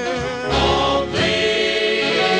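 1944 big-band dance record: the band and a choral vocal group sing held chords, with a new chord about half a second in and another about a second in.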